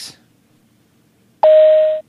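Airliner cabin PA chime used as a segment sting: one steady electronic tone sounds suddenly about a second and a half in, the higher first note of a two-note chime, with a thin, hissy, telephone-like quality.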